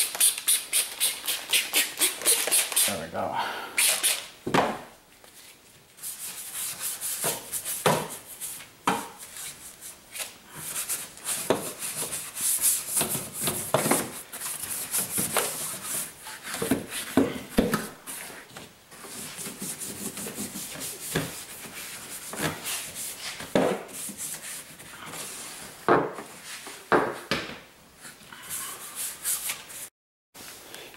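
A hand trigger foam sprayer is squeezed in quick squirts, several a second, for the first few seconds, spraying soapy water. After a short pause, a bristle detailing brush scrubs wet, soapy car body trim in irregular strokes.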